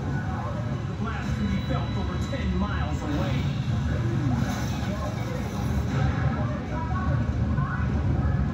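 Onlookers' voices speaking excitedly in Portuguese over a steady low rumble of background noise.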